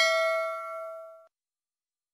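Notification-bell sound effect: a bright bell ding ringing out and fading, cut off abruptly a little over a second in.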